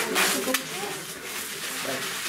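Low, indistinct voices of people talking in a room, with a single sharp click about half a second in.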